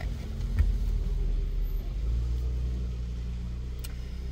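Low, steady rumble of a car heard from inside its cabin; its engine note shifts about halfway through. A short click comes under a second in and another near the end.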